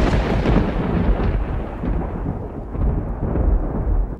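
Rolling thunder rumble laid over the title cards: loud, with a deep low end, slowly fading and cutting off abruptly near the end.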